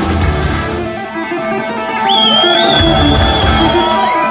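Heavy metal band playing live with electric guitars. The low drums and bass drop out for a moment, and about halfway through the full band comes back in under a high sustained note.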